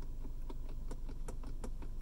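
Black Forest Industries aftermarket shift knob rattling on an Audi automatic gear selector as it is rocked by hand: a faint, quick run of small clicks, about five a second. The clicks are the play (slop) between the knob and the lever, which the maker calls normal and the owner takes for a cheap, loose fit.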